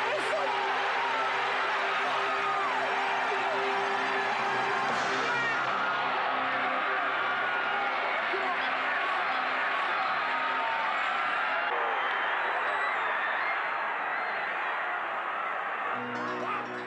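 Football stadium crowd and players yelling and cheering, a loud, continuous mass of many voices. A sustained music chord runs under it for about the first five seconds. The noise eases slightly near the end.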